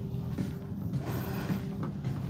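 Shopping cart being pushed along a hard store floor, its wheels rolling with a steady low rumble and faint clatter.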